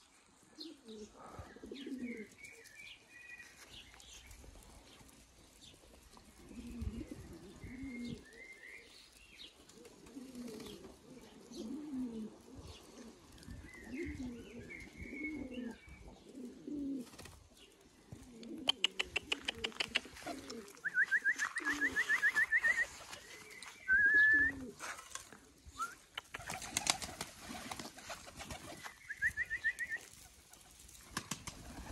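A flock of domestic pigeons (Baku and Iranian breeds) cooing again and again, with higher bird chirps over them. About two-thirds in, a run of fast sharp ticks and a quick high trill comes in loudest, and the trill returns twice.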